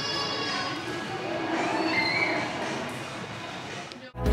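Steady background hubbub of a shop, with faint indistinct voices in the distance.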